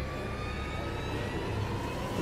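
Distant road traffic: a steady low rumble and hiss.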